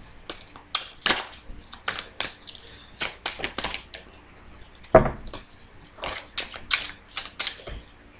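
An oracle card deck being shuffled by hand: a string of short, irregular card clicks and slaps, with one louder knock about five seconds in.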